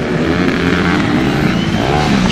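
Engines of small racing motorcycles being revved hard, their pitch swinging up and down as the riders work the throttle.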